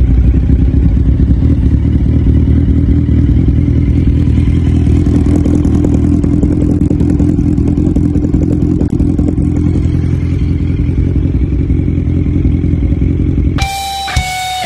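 2012 Kawasaki Z1000's 1043 cc inline-four engine idling steadily at standstill, through a short black aftermarket slip-on muffler. It cuts off near the end, replaced by music.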